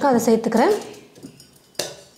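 A woman's voice speaks briefly. Then, near the end, crushed ice drops into a tall drinking glass with one short, sharp clatter.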